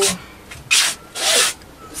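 A woman breathing heavily, two breathy exhales, the second longer and faintly voiced like a sigh: she is tired.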